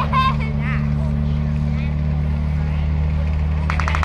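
M4 Sherman tank's engine running with a steady low drone as the tank drives across the grass, with a quick run of clicks near the end.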